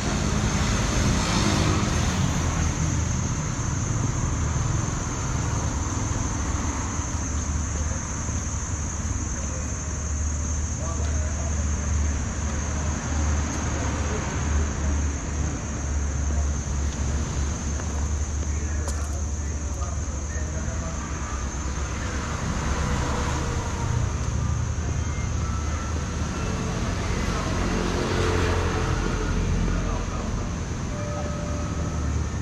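Steady street traffic noise: motor vehicles running along a road with a constant low rumble, and faint voices mixed in.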